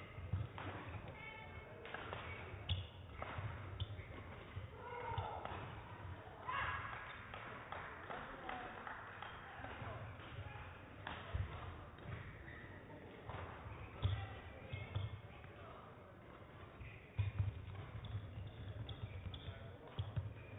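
Large-hall ambience during a stoppage of play: indistinct voices with scattered thuds and taps.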